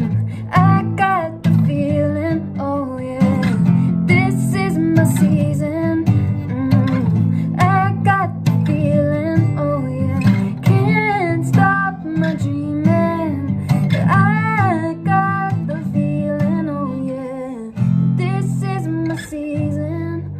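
Acoustic guitar strummed in a steady rhythm, with a woman singing a melody over it.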